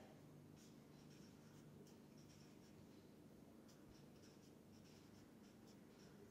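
Faint felt-tip marker strokes scratching on paper as a chemical structure is written, a series of short strokes over a low steady room hum.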